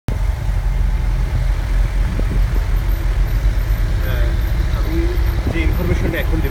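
Low, steady rumble of a moving vehicle's engine and road noise, with voices talking over it from about four seconds in.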